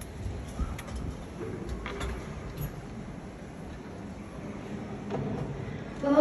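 Hushed ice-arena ambience: a steady low rumble of the big room with a few faint clicks and knocks.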